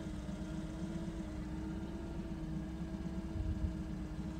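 1984 Pontiac Fiero's Iron Duke four-cylinder engine idling steadily, heard from inside the cabin.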